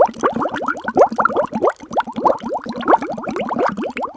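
A bubbling water sound effect: a rapid, steady string of quick rising bloops, several a second.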